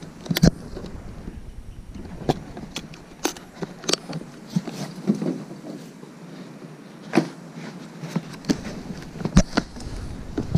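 Gloved hands rummaging through costume fabric in a cardboard box: rustling, with scattered knocks and clicks as items and the box are handled.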